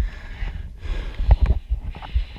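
Dirt bike engine idling with a low, uneven thumping, under a fainter, higher engine sound from other trail bikes coming through.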